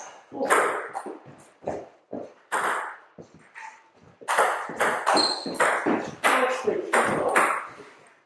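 Table tennis rally: the ball clicking back and forth off bats and table. There are scattered hits in the first half and a quick run of hits from about halfway to near the end, each ringing briefly in the hall.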